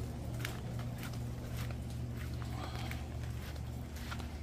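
Footsteps on a paved path, short taps about every half second, over a steady low hum.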